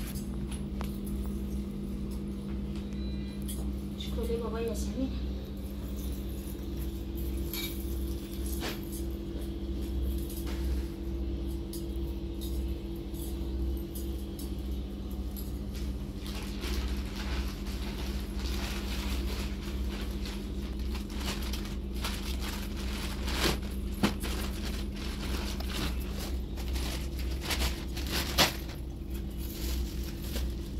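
Plastic shopping bags and clothes rustling and crackling as they are handled and unpacked, over a steady low hum. The rustling grows busier in the second half, with a couple of sharper knocks near the end.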